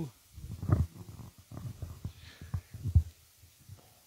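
Irregular low thuds and rumble from a handheld phone microphone carried at a walk, the knocks of footsteps and handling.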